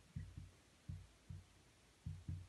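Faint, dull low thumps from a felt-tip marker pressing and lifting on a whiteboard as letters are written. There are four in two seconds, coming in pairs.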